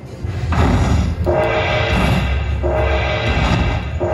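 Slot machine's bonus-tally music: deep drum booms under a short pitched phrase that repeats about every second and a half as each collected prize is added to the win. It starts about half a second in.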